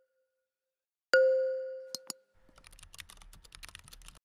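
A single bell-like ding that rings and fades over about a second, followed by two sharp clicks and then a fast run of keyboard typing clicks: a typing sound effect over animated on-screen text.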